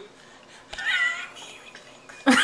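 A cat meowing once, a single call of under a second that rises and then falls in pitch, starting about a second in.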